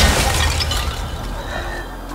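A film-trailer impact sound effect: one sudden crash followed by a hissing decay that fades away over about two seconds.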